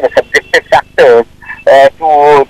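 A man speaking in short, choppy syllables that are hard to make out.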